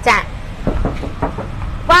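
Steady low rumble of street traffic in the pause between a woman's words, with her speech briefly at the start and again near the end.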